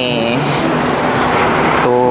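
Road vehicle passing: a steady rush of engine and tyre noise, loudest in the middle.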